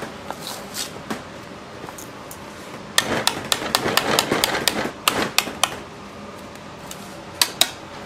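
A utensil knocking and scraping against a stainless steel mixing bowl while thick chocolate whipped cream is worked and scooped. There is a quick run of sharp clicks and scrapes about three seconds in, then two more clicks near the end, over a steady kitchen hum.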